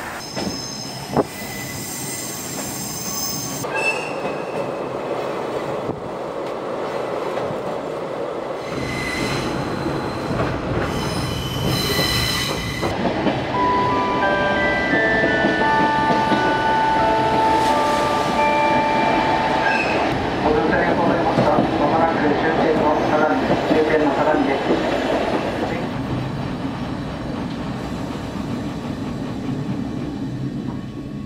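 A diesel railcar running along the line. The rumble builds from about a third of the way in, loudest in the middle, with wheels squealing at shifting pitches, then eases off near the end.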